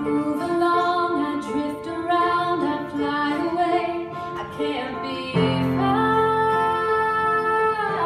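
A woman singing a slow melody with upright piano accompaniment, played live; a new piano chord comes in about five and a half seconds in.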